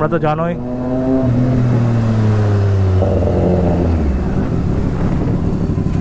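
Motorcycle engine running with its pitch falling steadily as the bike slows, giving way to a steady rushing noise of riding near the end.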